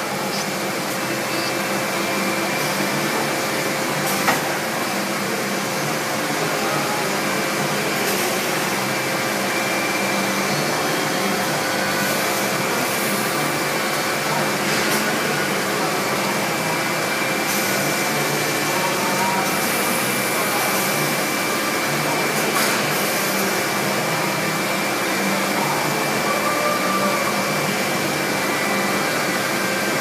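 Roll-slitting machine running steadily while cutting a mother roll into narrower rolls: a continuous whirring hum with a faint constant whine and a few light clicks.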